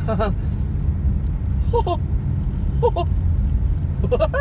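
Steady low rumble of a car driving, heard inside the cabin: engine and tyres on a snow-covered road. A few short laughs from the driver break in near the start and twice around the middle.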